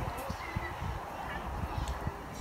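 Faint short honking bird calls over a low, uneven rumble and thumping.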